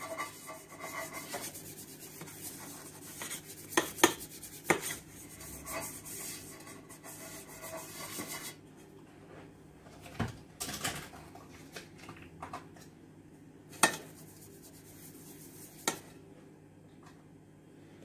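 A pastry brush rubbing butter over the inside of a round metal cake pan, a continuous scratchy brushing with a few sharp knocks of the pan and utensils. The brushing stops about halfway through, leaving only occasional clicks.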